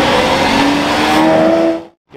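Lamborghini Aventador's V12 engine accelerating away, its pitch rising steadily in one pull. The sound drops out abruptly just before the end.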